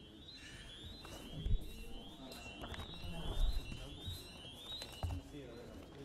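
Parliamentary division bells ringing: an electronic alarm that repeats a short rising run of notes about three times every two seconds, summoning members to the chamber for a vote. Under it, voices murmur and two low thumps sound, about a second and a half in and again near the middle.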